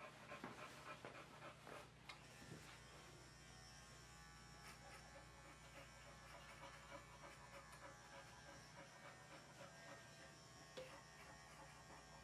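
Electric pet clipper with a 40 blade running faintly and steadily as it trims the hair from a dog's paw pads.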